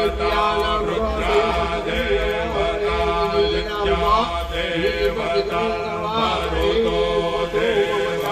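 Sanskrit Vedic havan mantras being chanted, a continuous melodic recitation with long held notes.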